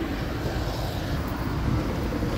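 Steady street traffic noise, a low even rumble with wind on the microphone.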